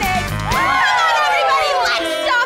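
Stage-musical number sung over a live band; about half a second in, the band drops out and several voices slide down together in one long falling cry.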